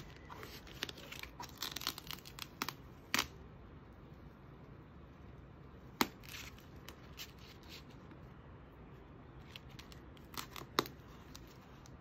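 Black Gorilla duct tape pressed onto and peeled off a masked plywood round, lifting small pieces of vinyl transfer masking during weeding: a run of crackles and sharp snaps in the first three seconds, single snaps about three and six seconds in, and another few snaps near the end.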